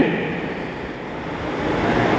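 A steady rushing noise with no clear pitch, dipping about a second in and swelling again toward the end.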